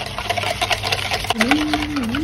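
Wire balloon whisk beating eggs and sugar in a plastic bowl: fast, irregular clicking and rattling of the wires against the bowl as the sugar is mixed in until it dissolves.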